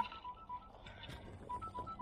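Faint electronic alarm beeping in short tones that alternate between two pitches: a timer reminding that the garden irrigation needs shutting off.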